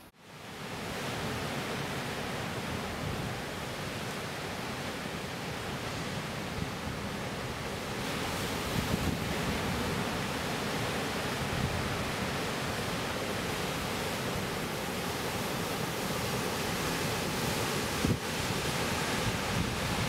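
Steady wash of sea surf breaking on a rocky shore, with a brief thump near the end.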